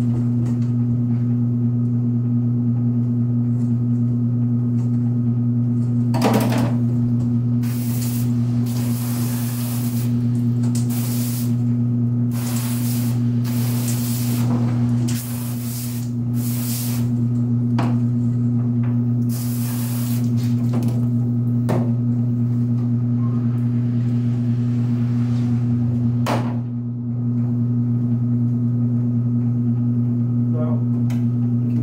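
A pistol-grip garden hose nozzle spraying water into a stainless-steel sink in a series of hissing bursts, from about six seconds in until about twenty seconds in, over a steady low electrical hum that runs throughout. A few sharp knocks come in between.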